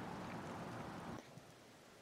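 Faint, steady outdoor background hiss with no distinct events, fading out about a second in and giving way to complete silence.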